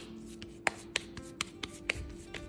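Hands patting and pressing a ball of fresh corn masa into a filled gordita: about five soft slaps of dough against the palms, roughly every half second.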